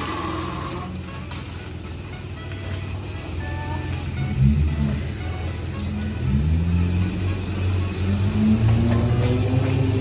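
Toyota Land Cruiser Prado petrol engine running at low speed as the SUV creeps into a parking space, its pitch rising several times from about four seconds in. Background music plays along.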